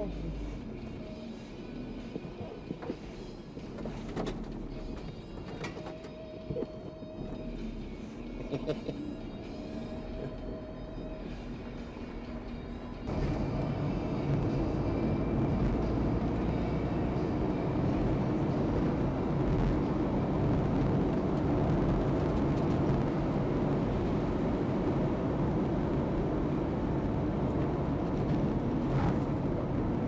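Car interior noise at highway speed: a steady rumble of engine and tyres on the road, which starts abruptly about 13 seconds in. Before it, quieter in-car sound with a few knocks and short tones.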